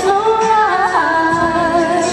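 A woman singing over recorded backing music through a microphone, holding long notes that slide in pitch about a second in.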